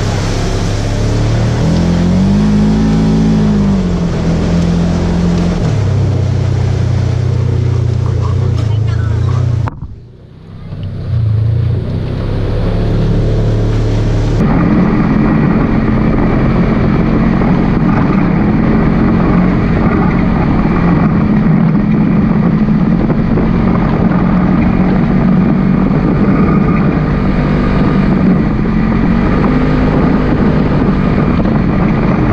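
Polaris RZR side-by-side engine running on a trail, its pitch rising and falling with the throttle over the first several seconds. The sound drops away briefly about ten seconds in, and from about fifteen seconds a steadier, duller engine drone carries on.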